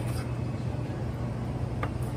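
Miyabi chef's knife slicing tomato on a wooden cutting board, with one sharp knock of the blade on the board near the end, over a steady low kitchen hum.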